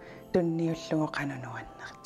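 A woman talking, with faint music held underneath.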